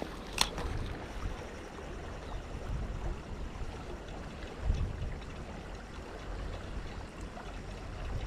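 Creek water flowing steadily, with a single sharp click from the spinning reel about half a second in as the cast is readied, and a brief low rumble near the middle.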